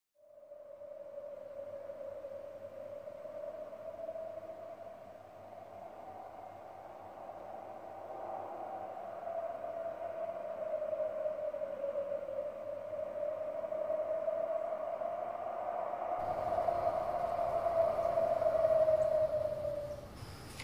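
A single eerie drone tone, a horror-film sound effect, held throughout and wavering slowly up and down in pitch. It fades in at the start and swells gradually louder toward the end, with a faint hiss joining it near the end.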